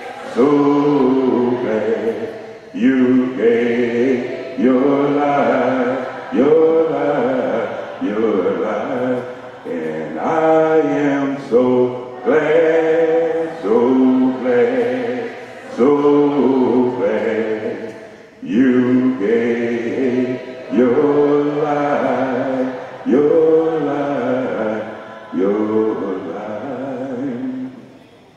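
Church congregation singing a hymn a cappella, voices in harmony with no instruments, in short phrases of a second or two.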